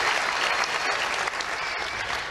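Audience applauding, easing off slightly near the end.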